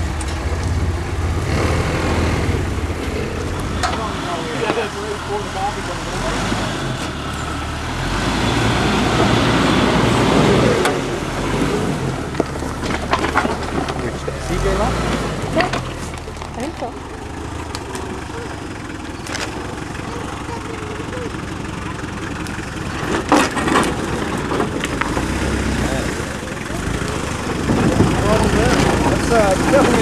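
Off-road Jeep engines running at low revs as the Jeeps crawl slowly over rocks and stumps, with people talking indistinctly alongside.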